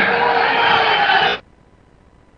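Football stadium crowd noise with steady chanting. It cuts off abruptly about one and a half seconds in, leaving only a faint hiss.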